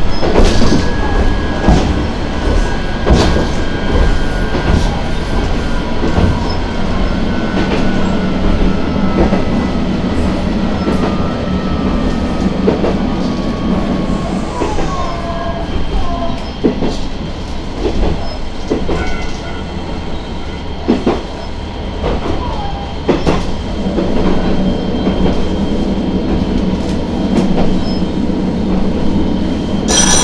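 Diesel railcar running on jointed single track, heard from the cab, with a steady low engine hum and repeated clicks of the wheels over rail joints. A thin whine slowly falls in pitch over the first half.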